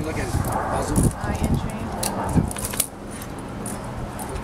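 Light metal jingling from a dog's collar and leash hardware as its head is held and handled, with people talking quietly over it.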